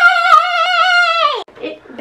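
A young girl's long, high-pitched held vocal 'aaah', steady in pitch with a slight waver, lasting about a second and a half before it cuts off and she starts to speak.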